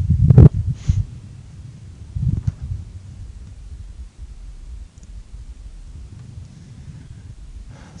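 A few dull low thuds at the start and again about two seconds in, then a faint steady low rumble.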